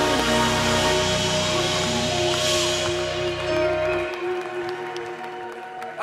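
Live worship band music winding down at the end of a song: held chords ring on, and about four seconds in the bass drops out, leaving a sustained pad of higher notes.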